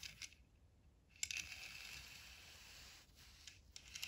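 Faint handling noise as a 1:62 Tomica die-cast toy car is picked at and turned on a play mat: a light click about a second in, then a soft scraping for about two seconds, with a couple of small clicks near the end.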